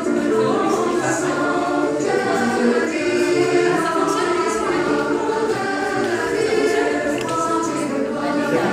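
Choral music: several voices singing long held notes together.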